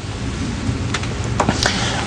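Steady hiss with a low rumble, the background noise of an old broadcast recording, heard in a pause between words. A few faint clicks sound in the second half.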